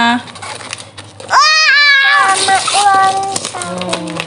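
Wrapping paper and plastic crinkling and tearing as a present is opened by hand, with a child's high-pitched excited voice rising loudest about a second and a half in and more voices after.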